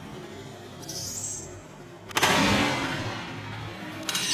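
One sledgehammer blow into a wrecked upright piano about two seconds in: a loud crash, with the piano's strings and frame ringing on for about a second afterwards.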